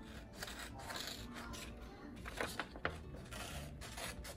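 Faint rustling and scraping of construction paper being handled.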